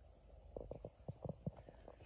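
A quick, irregular run of faint, soft knocks, about eight in a second and a half, starting about half a second in.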